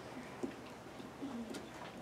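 Recorded orca calls played faintly over classroom loudspeakers: a few short, low calls that glide in pitch, one dipping and rising near the middle, with a few sharp clicks among them.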